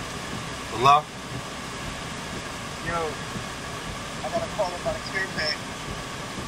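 Steady hum of a Volkswagen car idling, heard from inside the cabin, with a few brief voice sounds, the loudest about a second in.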